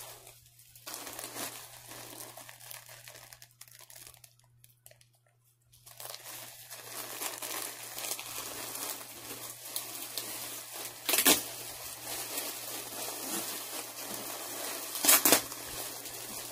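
Crinkly packaging of a yarn mystery bag being handled and opened: rustling and crinkling that pauses briefly about four seconds in, then carries on with two sharper, louder crackles about four seconds apart.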